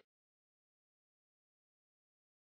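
Silence: the audio track has ended and carries no sound.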